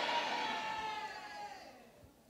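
A single held high tone with overtones, sliding slightly down in pitch and fading away over about two seconds.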